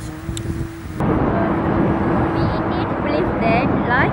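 A woman speaking. For the first second a held musical note plays softly underneath; about a second in the sound cuts to a louder take with a steady rushing background noise, and a woman starts talking over it about halfway through.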